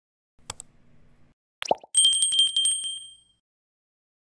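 Subscribe-button animation sound effects: a mouse click about half a second in, a short falling pop a second later, then a small bell ringing rapidly for about a second and fading out.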